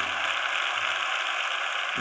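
Steady mechanical noise, even and unbroken, with a low held note underneath that stops a little past a second in.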